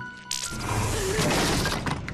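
Cartoon crash sound effect of a wooden stage set breaking and coming down: a loud clattering crash that starts about a third of a second in and keeps going, over music.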